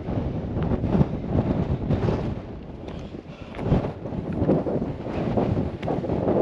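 Gusty mountain wind buffeting the camera microphone, a low rumbling rush that surges and eases several times.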